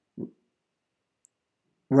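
Near silence, broken by one brief low sound about a quarter-second in; a man starts speaking at the very end.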